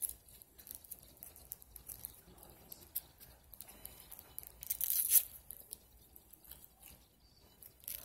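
Paper and tape wrapping being picked at and peeled off a small object by hand: faint crinkling throughout, with a louder burst of tearing about five seconds in.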